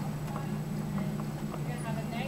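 Faint hoofbeats of a trotting horse in a row of soft, short ticks a few tenths of a second apart, over a steady low electrical hum.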